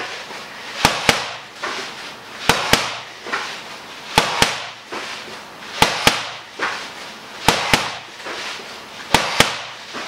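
Boxing gloves punching a Thai pad: a quick pair of sharp smacks about every second and a half, six pairs in all, one pair at the top of each partner sit-up.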